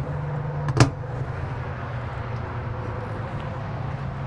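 Aluminium battery box lid pushed shut, its latch snapping closed with one sharp click less than a second in, over a steady low hum.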